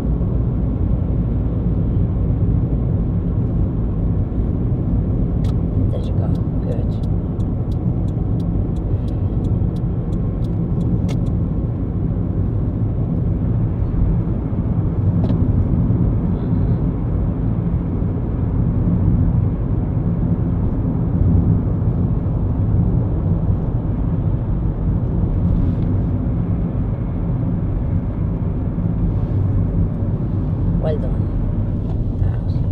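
Car driving at motorway speed: steady rumble of tyres and engine. From about six seconds in, a run of about a dozen evenly spaced ticks, roughly two a second, lasts about five seconds.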